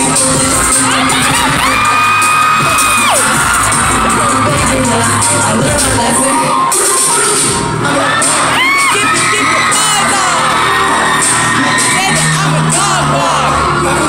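Live pop music over a concert sound system, with a crowd of fans screaming and cheering over it. There are long high screams in places.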